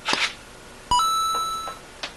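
A brief swish, then about a second in a sharp click followed by a ringing electronic beep that fades away over most of a second.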